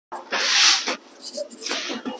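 A person's sharp, breathy exhale, then shorter breathy sounds.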